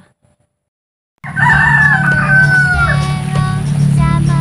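A rooster crowing: one long call that starts suddenly about a second in and falls away at its end. Music starts with it and runs underneath.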